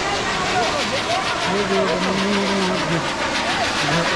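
Firework fountains spraying sparks, making a dense, continuous hissing crackle, with people shouting over it; one voice holds a long call in the middle.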